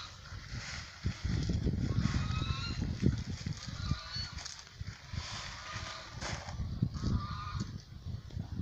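Farm fowl calling with short honks, repeated several times, over a steady low rumble.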